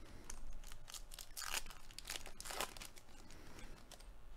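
A trading card pack's wrapper being torn open and crinkled by hand, in rustling bursts, loudest about one and a half and two and a half seconds in.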